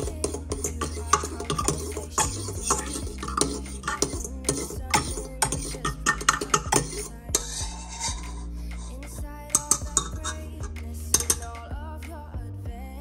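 Wire whisk clinking and scraping rapidly against a stainless steel mixing bowl while stirring a little liquid, over background music.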